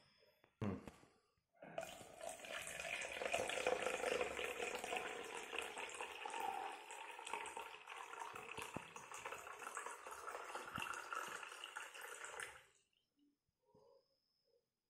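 Water poured from a plastic jug into a Eureka (overflow) can, running steadily for about eleven seconds, easing off and stopping suddenly near the end. A short knock comes about half a second in.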